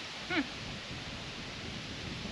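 Steady outdoor background noise, an even hiss of open air, with one brief voiced sound about a third of a second in.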